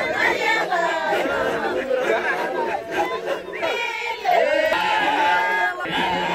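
Maasai men's voices chanting and calling out together during the jumping dance, several voices overlapping with swooping rising and falling calls.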